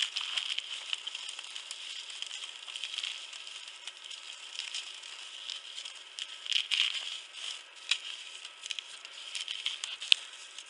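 Dried corn kernels being shelled by hand off a small cob and dropping onto newspaper: a steady run of small clicks and crackles, with a few louder bursts about two-thirds of the way through and again near the end.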